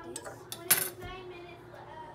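Kitchenware clinks once sharply a little under a second in, over a faint steady hum.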